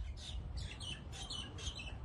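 A small bird chirping in a quick series of short, high chirps, several a second, over a steady low outdoor rumble.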